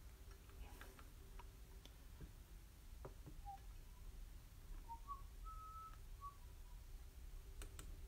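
Near silence broken by scattered faint clicks, then a short, soft whistled phrase of four or five notes in the middle, the highest note held for about half a second.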